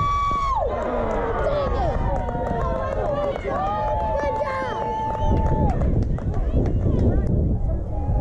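Spectators shouting and cheering, several voices at once, with two long drawn-out yells: one at the start and another about four seconds in.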